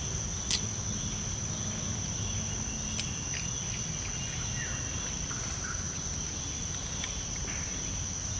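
Steady high-pitched drone of insects, unbroken throughout. A sharp click sounds about half a second in, and fainter clicks come near the middle.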